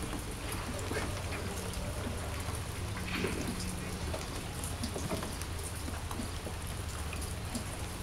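Steady rain falling on the yard and porch, with scattered drips and taps of drops.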